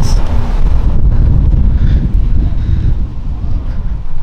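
Wind buffeting the camera's microphone: a loud, uneven low rumble.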